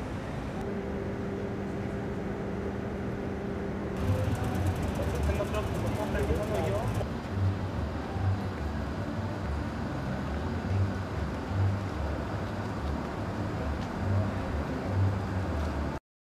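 Outdoor street ambience: a steady low hum for the first few seconds, faint voices around the middle, and irregular deep rumbles through the second half.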